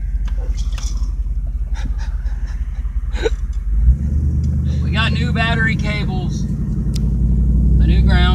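Car being driven, its engine and road rumble heard from inside the cabin; about four seconds in there is a brief thump, after which the low drone grows louder.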